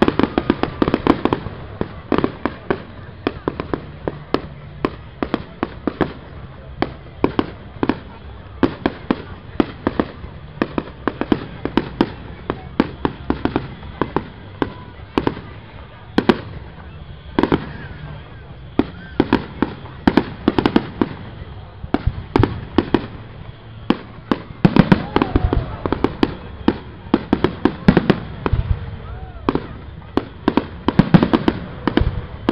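Fireworks display: aerial shells going off in a continuous run of sharp bangs, several a second, with a denser, louder volley near the end.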